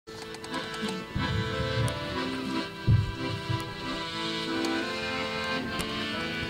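Men's choir singing held chords in several parts. A low thump on the microphone about halfway through.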